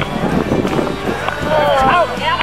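Indistinct voices of several people talking and calling out in a group outdoors, with no clear words.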